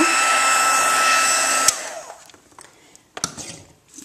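Stampin' Up! embossing heat tool blowing with a steady hiss and a high whine as it finishes heat-setting embossing powder. It is switched off with a click a little under halfway through and the fan runs down. A couple of light clicks follow near the end.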